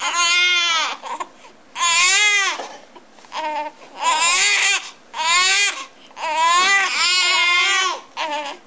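Two newborn babies crying in turns, in a series of loud wails up to about a second each with short gaps between, the cries overlapping near the end.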